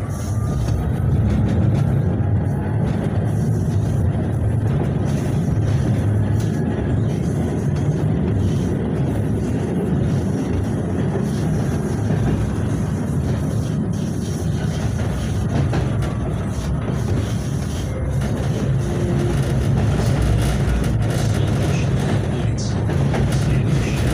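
Cabin sound of a KTM-28 (71-628-01) low-floor tram running along its track: a steady low rumble of wheels and running gear on the rails. A faint whine from the electric traction drive shifts in pitch now and then.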